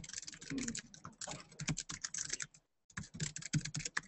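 Irregular clicking of typing on a computer keyboard, quiet and continuous, with a short break about two and a half seconds in.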